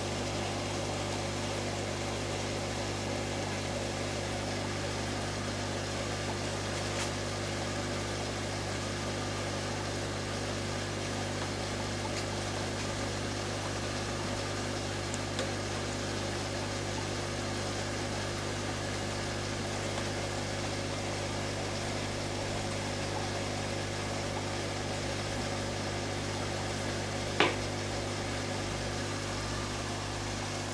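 Steady low electrical hum with a hiss, the running of aquarium pumps and filtration equipment; a single sharp click near the end.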